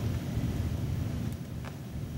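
Low, steady rumbling background noise with no speech, and a faint click about one and a half seconds in.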